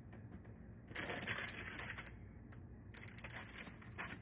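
Crinkling and rustling of a paper gift bag and its packing as items inside it are adjusted by hand, in two bursts of rapid crackle: one about a second in and one near three seconds.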